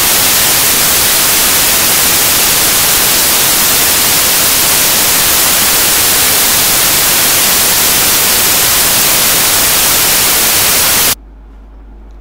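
Loud, steady static hiss spread evenly across all pitches, with no speech through it, cutting off suddenly about a second before the end.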